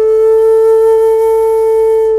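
Shakuhachi, the Japanese end-blown bamboo flute, holding one long, steady note with breath audible in the tone.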